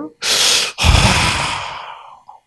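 A man's loud breath into a handheld microphone: a short, sharp intake, then a longer breath out that fades away.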